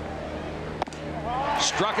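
A baseball fastball pops once into the catcher's leather mitt, a single sharp crack about a second in, over steady stadium crowd noise. The crowd noise swells near the end as the pitch strikes the batter out.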